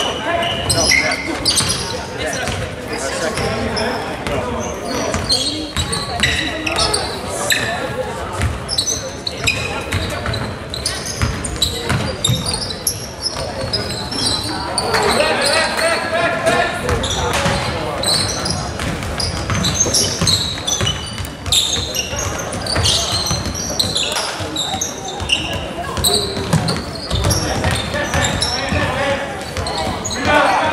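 Game sounds of an indoor basketball game on a hardwood court: the ball bouncing repeatedly, short high-pitched squeaks of sneakers, and indistinct shouts from players, all echoing in a large gym.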